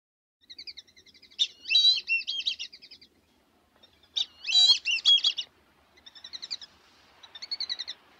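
A songbird singing in four phrases of fast, high chirping trills and warbles, with short pauses between them; the last two phrases are quieter.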